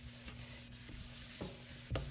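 Cloth wiping and buffing a stainless steel sink, a faint rubbing, with a light knock near the end.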